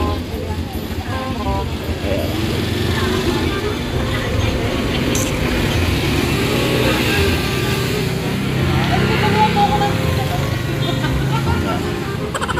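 Small engine of a custom-built mini jeepney running steadily as it moves off slowly, with voices and laughter around it.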